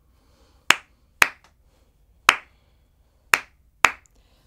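Hand claps reckoning the khanda chapu tala in Karnatic music: five sharp claps in an uneven pattern, a close pair, a single clap about a second later, then another close pair.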